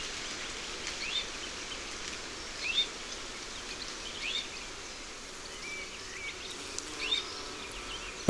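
Wild birds giving a few short chirps, spaced a second or two apart, over a steady background hiss of outdoor ambience.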